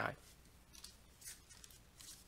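Faint, scattered light clicks and ticks, a few short ones spread irregularly, after the end of a spoken word at the very start.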